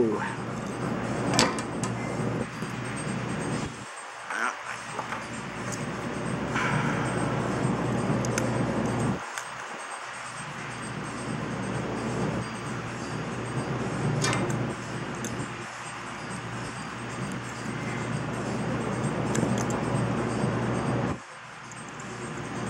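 Small metal connector parts being handled and fitted: a few light clicks and rattles over a steady background noise.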